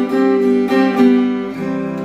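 Acoustic guitar strummed on a C chord with a fretting-hand hammer-on, the chord ringing between strokes and a new low note entering about one and a half seconds in.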